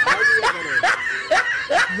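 Laughter, most likely a dubbed-in laugh track, going in short rising bursts about two a second.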